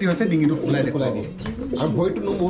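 Domestic pigeons cooing, low coos overlapping one another.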